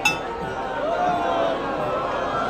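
One ringing metallic strike, like a metal bell, right at the start, its tone dying away, with a crowd's voices and chatter going on.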